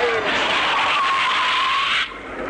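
Van tyres squealing as it brakes hard to a stop: a steady high screech over a hiss, cutting off suddenly.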